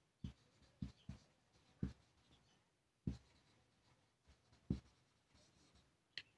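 Marker pen writing on paper: faint scratching of the tip, with several soft taps at irregular intervals as it meets the page.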